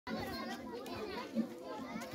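A crowd of children talking and calling out at once: a steady babble of many young voices, with no single voice standing out.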